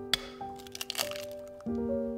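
A raw egg cracked open over a ceramic bowl: a sharp crack of the shell just after the start, then a brief crackling as the shell is pulled apart about a second in. Gentle background music plays throughout.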